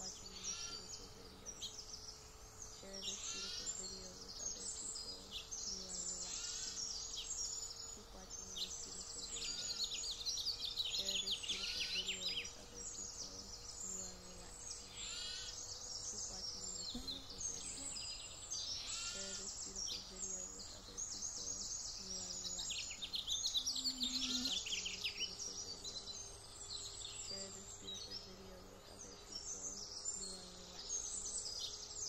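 Birdsong: several birds chirping and trilling in quick repeated phrases, over a faint steady background of ambient noise.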